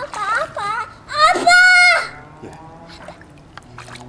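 A little girl's voice: a few short sounds, then a loud high-pitched squeal about a second in that lasts under a second.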